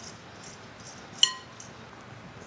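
Glass mixing bowl clinks once about a second in, a short ringing note, as hands toss crumbled cheese in it.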